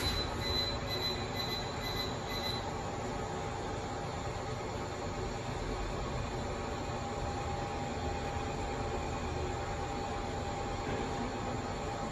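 Original 2003 LG traction lift: the doors have just shut with a knock, and a high pulsing beep runs for the first two and a half seconds. Then the car travels down with a steady motor whine over the rumble of the ride.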